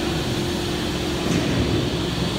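Steady mechanical hum of a large steel fabrication shop, machinery and ventilation running continuously with a constant low tone.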